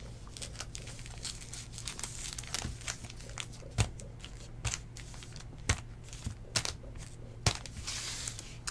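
Foil-wrapped trading card packs crinkling and crackling as they are handled and stacked, in irregular small crackles, over a steady low hum.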